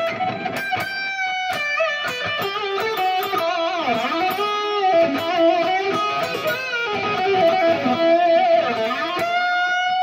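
Electric guitar played through a Line 6 Pod Go modeler on a lead tone with straight delay and hall reverb: single-note lead lines with string bends and vibrato, starting right at the beginning after a moment of silence.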